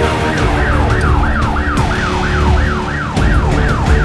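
Fire-brigade ambulance siren sounding a fast repeating wail, each sweep falling in pitch, about three a second, over a low rumble of traffic.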